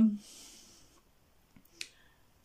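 A quiet pause with one short, sharp click near the end and a couple of fainter ticks around it.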